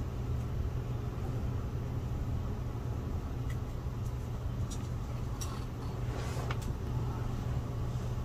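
Steady low hum, with a few faint short clicks and taps of small objects being handled.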